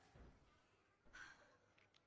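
Near silence: faint room tone with two soft, brief noises, one just after the start and a slightly louder one about a second in.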